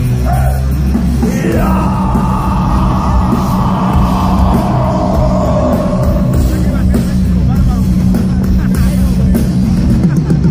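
Heavy metal band playing loud and live: distorted electric guitars, bass and drum kit. A long held high note comes in about a second and a half in and slides slightly down until about six seconds in.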